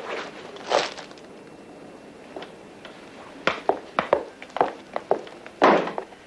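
Footsteps on a hard floor: a quick run of sharp steps past the middle, with a brief scuffing noise about a second in and another near the end, over the steady hiss of an old film soundtrack.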